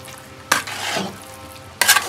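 A metal spoon stirring and turning over biryani rice in a large metal pot, with two strong scraping strokes, about half a second in and near the end.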